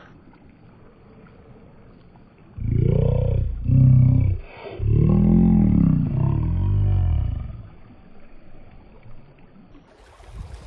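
Four deep, drawn-out growling sounds, each rising and then falling in pitch, from about two and a half to seven and a half seconds in. They stand over a faint low background hiss.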